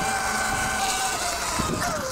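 Segway X160 electric dirt bike's motor whining steadily as it is ridden, over a steady hiss; the whine dips slightly in pitch near the end.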